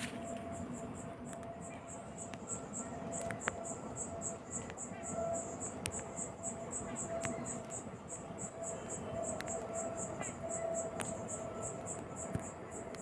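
An insect chirping steadily in a rapid, high-pitched pulse about four times a second, with a few faint clicks.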